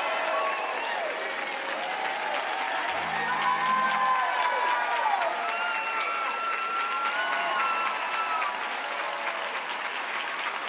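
Concert audience applauding and cheering, with voices calling out over the clapping as a song ends.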